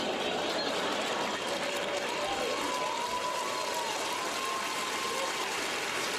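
A large audience laughing together, holding at a steady level throughout, with a few individual voices standing out in the mass of laughter.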